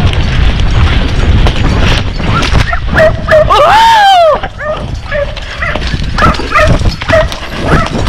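Dogs barking in short yelps beside a galloping horse, over a constant low rumble of wind on the microphone and hoofbeats. About halfway through comes one longer call that rises and falls.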